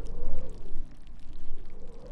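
Liquid trickling over dry gravel: a stream of many tiny crackles and clicks over a low rumble.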